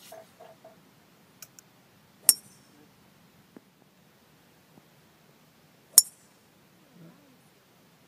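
Two golf shots with a driver: each is a sharp, loud crack of the clubface striking a teed ball, with a brief bright ring, the first about two seconds in and the second nearly four seconds later.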